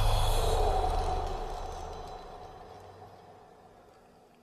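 The fading tail of a cinematic impact sound effect: a low rumble with an airy hiss dying away steadily over about three seconds to near silence.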